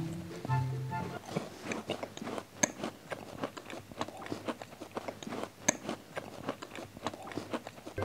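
Close-miked chewing of kourabiedes, crumbly Greek butter cookies coated in powdered sugar: a quiet, irregular run of small crunches and clicks. Faint background music fades out about a second in.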